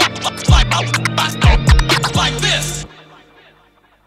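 Boom bap hip hop beat with turntable scratching over deep kick drums, ending abruptly about three seconds in and leaving a short fading tail.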